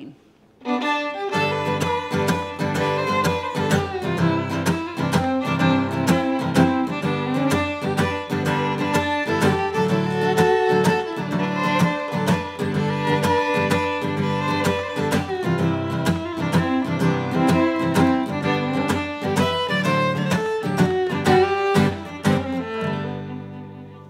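Fiddle and acoustic guitar playing a Cajun waltz, starting about a second in and fading near the end. The guitar is strummed in closed barre chords, a tighter, more driven rhythm than open ringing chords.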